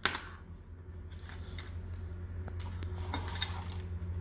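Hands handling an avionics wiring harness: a sharp click right at the start, then a few faint clicks and rustles of plastic connectors and wire, over a steady low hum.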